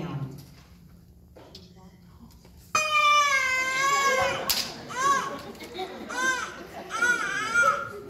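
A recorded human baby crying, played over the hall's speakers: quiet at first, then one long high wail beginning about three seconds in, followed by a run of short, rising-and-falling cries.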